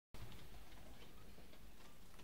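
Faint background noise of the recording: a steady low hum and hiss with a few faint scattered ticks.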